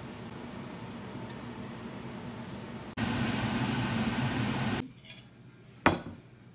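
A steady mechanical hum, like a kitchen fan or appliance, steps abruptly louder about halfway through and then drops away. Near the end comes one sharp clink of glass.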